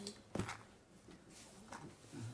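A single sharp knock about a third of a second in, then a fainter click near the end, over faint low murmur.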